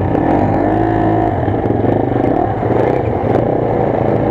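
Off-road dirt bike engines running at low revs, with a brief rise and fall in engine pitch around one second in.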